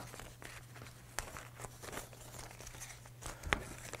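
Faint rustling and crinkling of paper-backed Heat Bond cut-out pieces being handled and shuffled on a table, with a few light taps. A steady low hum runs underneath.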